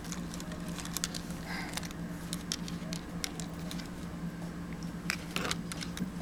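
Scattered light clicks and taps of plastic Breyer model horses and toy stable pieces being handled and moved on a surface, over a steady low hum.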